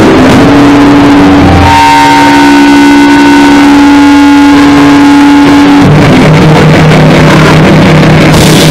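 Harsh noise: a loud, saturated wall of distorted noise with a steady feedback-like tone held through it, dropping to a lower drone about six seconds in.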